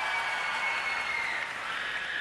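Live audience applauding and cheering at a steady level.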